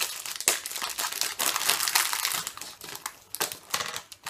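Crinkling and crackling of a chocolate bar's wrapper as it is handled, a quick irregular run of crackles that thins out near the end.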